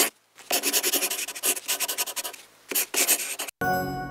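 Pencil scribbling on paper in quick scratchy strokes, as a drawing sound effect, in two runs with a short pause between. Near the end it gives way to a short held musical chord.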